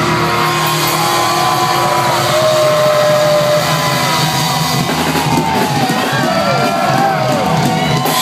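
Live heavy metal band playing loud: the drums drop back and held guitar notes ring on while the crowd shouts and whoops.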